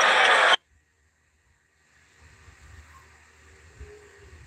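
Basketball game broadcast audio cutting off abruptly about half a second in, followed by dead silence and then only a faint low background noise: the live stream dropping out.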